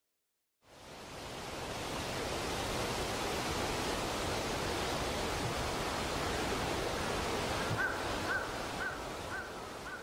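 Steady outdoor wind noise that comes in abruptly after a brief silence and eases a little toward the end. Near the end a bird gives five short chirps, about two a second.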